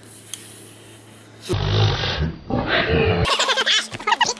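A loud, rough roar of about two seconds, starting about a second and a half in, after a quiet stretch.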